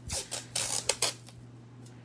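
Masking tape being handled off-camera: a quick cluster of short scratchy rips and rustles with a few clicks in the first second, then quiet.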